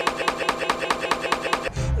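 A tiny slice of the song's orchestral music repeated rapidly and evenly, about nine times a second, as a stutter loop. Near the end it breaks off into the music proper, with a voice starting to sing.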